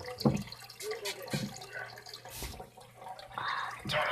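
Small splashes and drips of water in a turtle tank, with a few light knocks as a rock is moved about in it.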